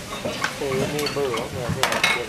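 A metal ladle stirring and scraping in a steaming wok over a steady sizzle, with a few sharp clanks of metal. A voice speaks briefly in the middle.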